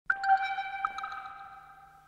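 Opening of a dub track: a single bell-like ping, struck once and ringing out, fading away over about two seconds.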